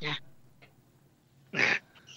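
A voice finishing a word, a pause, then one short, sharp breath about one and a half seconds in.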